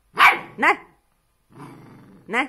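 A puppy gives one sharp bark, then about a second and a half later starts a low growl, answering back at a person.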